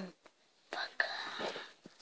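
Brief whispered speech lasting about a second, starting just before the middle.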